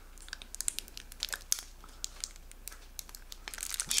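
Plastic squeeze bottle of mayonnaise being squeezed out in a thin line, giving an irregular run of small crackling clicks and crinkles.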